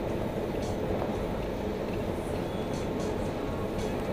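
Steady road and engine noise inside the cab of a vehicle cruising at an even speed on a paved road.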